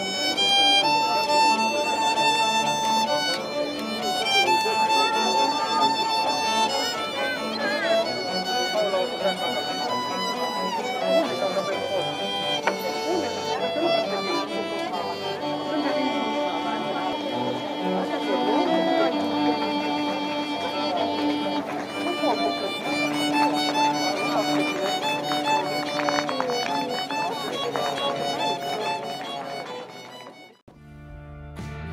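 Violin and cello duo playing a melody live, the violin carrying long held notes over the cello.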